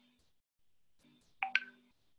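A short electronic beep, one quick blip about one and a half seconds in, over a faint low hum.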